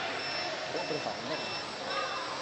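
An electronic beeper sounding short, high-pitched beeps about twice a second, steady and even, over indistinct voices.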